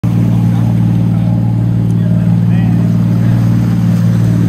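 A boat's engine running steadily under way, a loud, even low hum that does not change.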